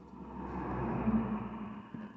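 A vehicle passing by outside, heard from inside a car: a muffled rushing hum that swells to a peak a little past the middle and fades away again.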